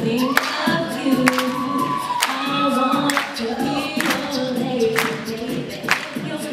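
A cappella vocal duet: a woman sings a melody over live beatboxing, with sharp beatboxed snare hits landing roughly once a second.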